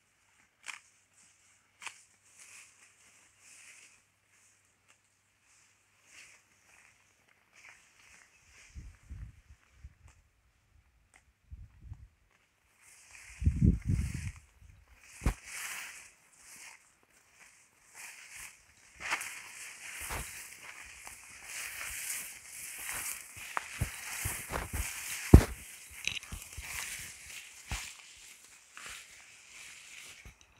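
Cattle grazing tall Mombaça grass: sparse, faint tearing and crunching bites at first, then from about halfway on a louder, dense rustling of tall grass blades with footsteps and snapping stems as someone walks through the pasture.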